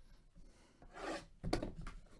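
Gloved hands rubbing and handling a cardboard trading-card hobby box, starting to open it. There is a soft scraping swell about a second in, then a few light knocks.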